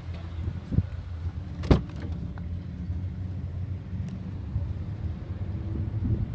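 Car door latch clicking as the driver's door is pulled open: a small click, then a sharper, louder clunk a second later, over a steady low rumble.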